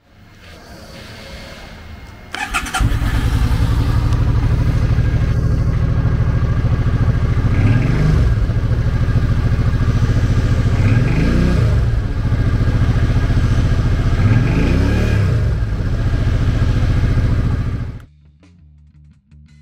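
2006 Suzuki Boulevard C50T's fuel-injected V-twin is started with a brief crank of the starter about two seconds in, then catches and idles. It is revved three times, each rev rising and falling back to idle in about a second.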